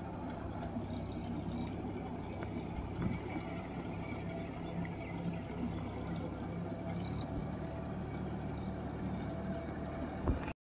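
Farm tractor's diesel engine running steadily as it tills a flooded rice paddy: a low, even drone.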